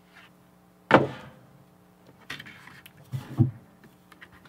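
Cardboard record jacket and inner sleeve being handled: a sharp thump about a second in, then sliding and rustling of card and sleeve as the record is drawn out.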